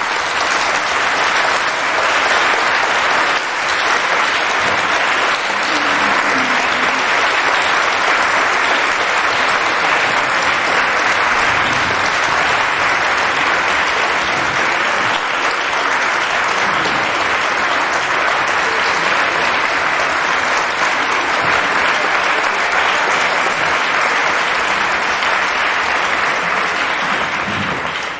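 Sustained applause from a large seated audience, steady throughout and dying away near the end.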